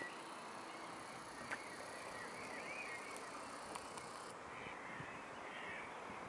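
Faint bird calls, short thin chirps that rise and fall, repeating every second or so over a quiet outdoor hush.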